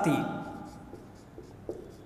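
Marker pen writing on a whiteboard, faint strokes and squeaks of the felt tip on the board.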